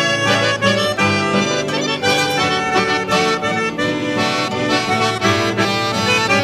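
Instrumental break of a gaúcho regional song, led by accordion playing a melody over rhythmic chord accompaniment, with no singing.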